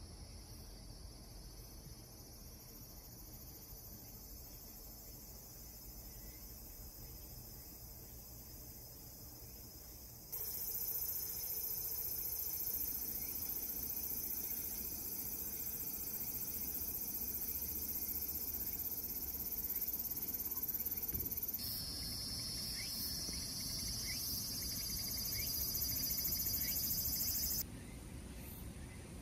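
A chorus of insects singing outside, a steady high-pitched shrill trill with no break. It jumps louder about ten seconds in and shifts in pitch again a little past twenty seconds in.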